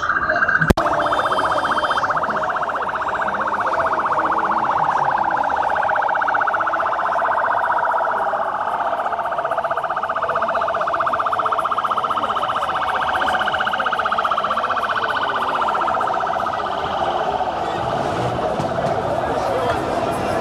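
An escort vehicle's siren sounding continuously, its pitch sweeping up and down with a fast warble, over the noise of a crowd.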